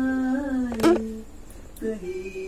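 A person humming one long held note that rises slightly near the middle and stops a little past a second in. A sharp click sounds about a second in, and a short new voiced sound starts near the end.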